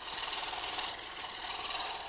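Woodworking shop noise: a steady, rough, machine-like rasp of wood being worked, starting suddenly and holding at an even level.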